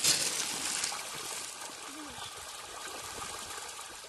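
A crowd of farmed pangasius catfish churning and splashing at the pond surface in a feeding frenzy. The splashing is loudest right at the start and settles within about a second into steady continuous splashing.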